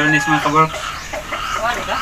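Chickens clucking in short, broken calls, with people's voices mixed in.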